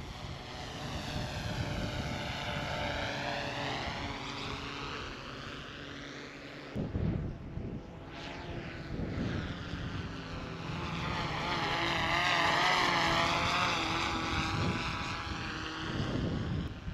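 A DJI Matrice 30T quadcopter flying past in normal mode. Its propeller drone swells as it approaches and fades as it moves off, twice: a second, louder pass follows a brief break about seven seconds in. Wind rumbles on the microphone underneath.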